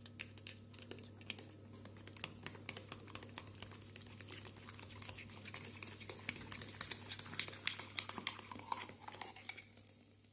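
A metal teaspoon clicking rapidly against the inside of a ceramic mug as matsoni is stirred with baking soda and then scraped out into the batter bowl; the clicks come thicker and louder about seven to nine seconds in.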